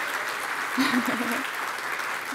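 Audience applauding, a steady clatter of clapping, with a short burst of a person's voice about a second in.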